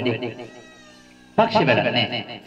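A man speaking into a microphone, broken by a pause of about a second. In the pause a faint, high, drawn-out call rises and falls, then the speech resumes.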